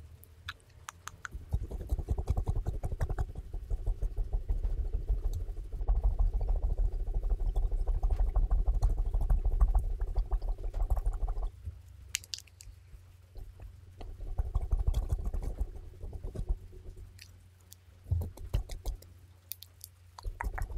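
Fluffy pom-pom brush and makeup brush swept rapidly over a microphone grille close up, a dense rustling scratch with a heavy low rumble. It is loudest in the first half, drops away about twelve seconds in, returns briefly, then fades to softer strokes near the end.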